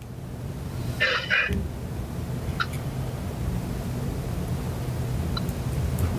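Low steady hum of a meeting room during a pause in talk, with a brief rustle about a second in and a couple of faint clicks.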